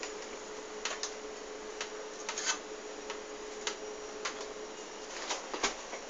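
Eggs being handled in a plastic egg tray in a refrigerator door: scattered light clicks and knocks, with a faint steady hum under them that stops about five seconds in.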